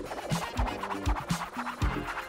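Dance music played by DJs from the decks, with a steady kick drum about two beats a second and record-scratch sounds cut over the track in the middle.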